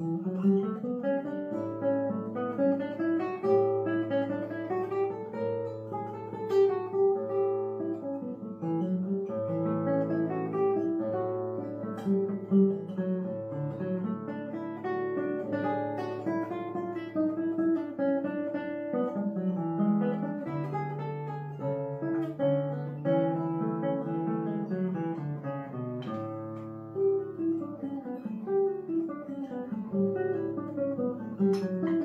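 Solo nylon-string classical guitar, fingerpicked, playing a held bass line under a moving melody and arpeggiated chords. The playing enters sharply right after a near-silent pause and then runs on without a break.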